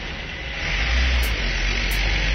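Steady rushing background noise with a deep rumble, growing louder about half a second in.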